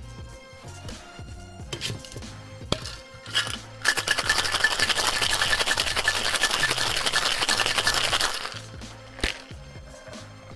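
Ice rattling fast and hard inside a stainless steel Boston shaker, shaken for about four and a half seconds from about four seconds in, over background music. A few light clinks come before it and a sharp metallic knock near the end.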